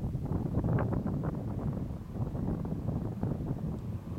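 Gusty wind buffeting the microphone outdoors: an uneven low rumble with ragged gusts.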